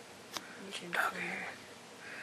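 Faint whispering or very low speech, with a single sharp click about a third of a second in.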